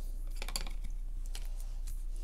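Quiet room tone with a steady low electrical hum and a few faint light clicks.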